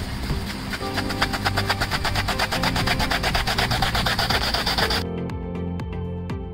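Background music with a steady beat over a loud, even hiss of water spraying from a facade-cleaning robot's brush head. The hiss cuts off abruptly about five seconds in, leaving the music alone.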